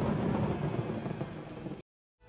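Rumbling storm sound effect, thunder with a rain-like hiss, slowly fading, then cut off suddenly near the end.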